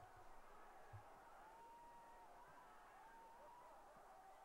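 Near silence: room tone, with a faint wavering thin tone and one soft knock about a second in.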